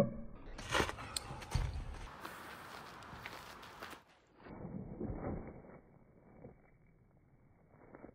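Footsteps, a landing and scuffing on gravel during a leaping kick: a sharp knock at the start, then a few seconds of thumps and scuffs under a rushing hiss, and another burst of scuffing about five seconds in.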